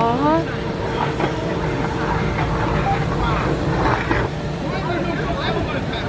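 Several people talking and calling out over a steady low rumble, with one voice calling out in a sliding pitch right at the start.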